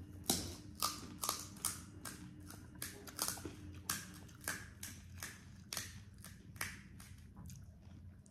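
Close-up chewing of crisp fried pani puri shells: irregular sharp crunches, about two a second.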